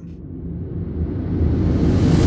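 Trailer-music transition sample, a reverse-style riser: a grainy, rumbling swell that grows steadily louder and brighter as it builds.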